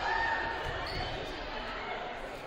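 A basketball bounced a few times on a hardwood gym floor by the referee, over a background of crowd voices in a large gym.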